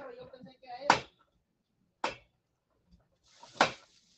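Three sharp kitchen knocks, about a second apart, from a utensil and cookware at the stove, with a brief hiss around the last one and faint talk at the start.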